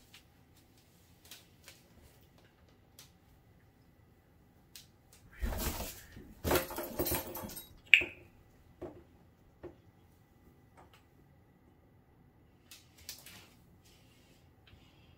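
An African grey parrot moving about in a cardboard box littered with shredded cardboard and paper. Light scattered taps and scrapes are followed, about five seconds in, by two or three seconds of loud rustling and scratching that ends in one short, sharp, high chirp.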